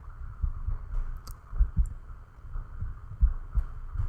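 Soft, irregular low thumps over a faint steady hum, with a couple of faint ticks about a second in.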